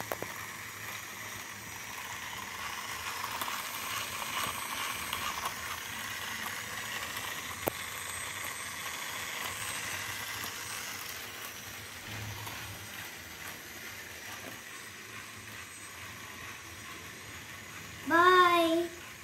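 Small battery toy motor driving a train of interlocking plastic gear bricks, giving a steady whir of meshing plastic teeth. A single brief click comes about halfway through.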